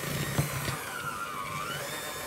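Electric hand mixer running, its beaters whipping royal icing in a bowl; the steady motor whine dips slightly in pitch and rises again.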